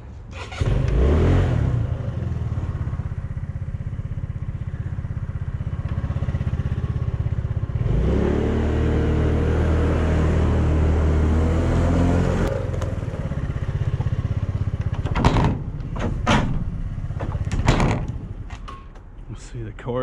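Small motorcycle engine starting about half a second in and idling, then revving up as the bike pulls away, with the pitch rising. After a few seconds it eases back to a low run, with a few knocks near the end as it slows.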